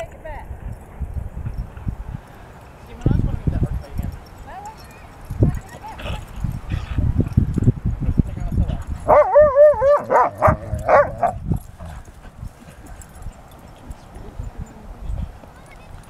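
A dog barking a quick run of high-pitched barks for about two seconds, starting about nine seconds in. Low rumbling thuds come earlier, around three seconds and again from five to eight seconds in.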